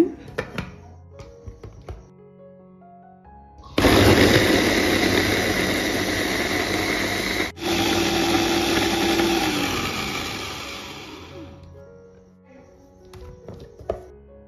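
Electric mini food chopper with a stainless motor head whirring for about eight seconds as its blade grinds chilies, shallots and garlic with a little oil into a spice paste. It cuts out for an instant about halfway through, then runs on and winds down. A few light plastic clicks from fitting the bowl and lid come before it starts.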